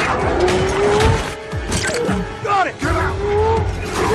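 Film soundtrack: a supercar engine revving up twice, its pitch climbing each time, with tyre squeal in between, all over the film's music score.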